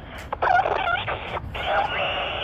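A voice coming through a walkie-talkie speaker, tinny and narrow-sounding, in two transmissions that each cut in and off abruptly, with a short break about one and a half seconds in. The words are garbled, like a silly voice rather than clear speech.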